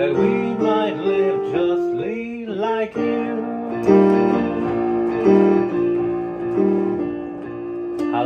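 Digital piano playing a hymn accompaniment. A man's voice glides through a few sung notes in the first three seconds, then held chords follow, a new one about every second and a half.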